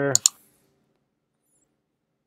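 Two quick clicks of a computer pointer, about a tenth of a second apart.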